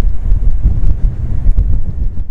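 Strong wind buffeting the camera's microphone: a loud, uneven low rush that rises and falls with the gusts.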